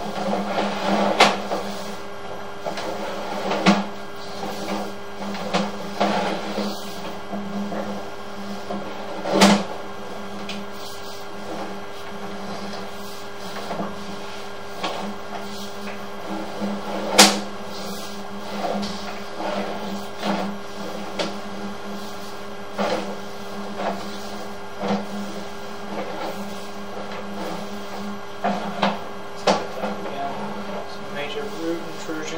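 Sewer inspection camera being retrieved, its push cable pulled back out of the pipe: irregular clicks and knocks, a few louder sharp ones, over a steady low hum.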